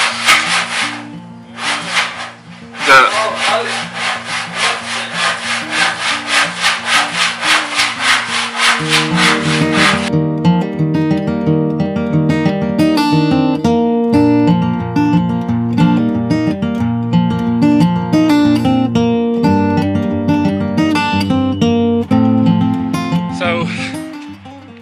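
Rhythmic scraping, about three or four strokes a second, with a short pause near the start, over background music. The scraping stops about ten seconds in, leaving only the melodic music.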